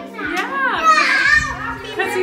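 A child's excited high-pitched squeals and shouts, starting about half a second in, over background music with a steady beat.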